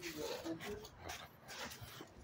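A dog whining briefly in a few short, high sounds in the first half-second, with steps and rustling about every half second.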